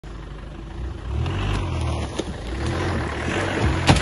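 An engine running steadily at low revs, its drone growing louder about a second in, with a few sharp knocks near the end.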